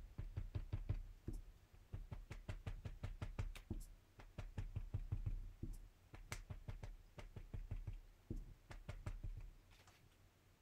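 Light, quick taps of a foam ink dauber dabbing pigment ink onto a photo-paper print lying on a tabletop, about five or six taps a second in short runs broken by brief pauses.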